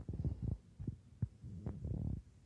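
Handling noise: a series of dull low thuds and rubbing from hands gripping the handheld camera and the boxed toy.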